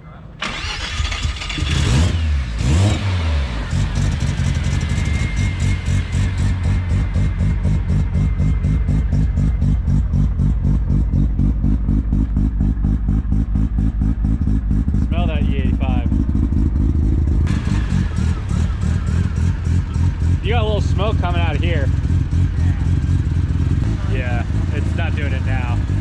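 Turbocharged Mazda RX-7 FD engine starting up and then idling steadily with a pulsing beat, with no revving.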